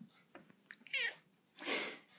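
A grey long-haired domestic cat meowing: a short pitched meow about a second in, then a rougher, breathier sound near the end.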